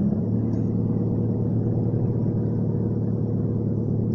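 Steady low rumbling hum with an even, unchanging level.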